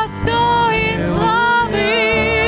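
Live worship band playing a song, with voices singing long held notes that waver in pitch over the band's accompaniment.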